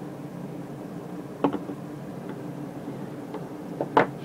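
A few light knocks and clicks from handling a compass and a Geiger counter probe on a wooden table, one about a second and a half in and two near the end, over a steady low hum.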